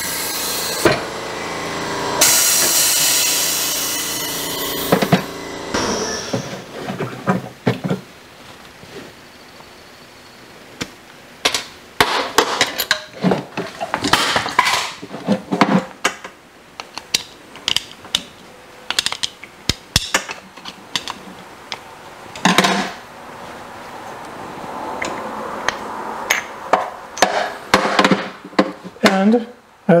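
A loud hiss of air from the Morgan G-100T air-driven injection molding press, strongest from about two seconds in and fading by about five seconds. It is followed by many sharp clicks and knocks as the small aluminum mold is handled and its halves are pulled apart.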